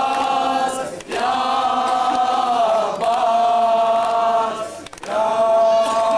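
Men's voices chanting an Urdu noha, a Shia lament, together in long held phrases, with short breaks about a second in and just before the five-second mark.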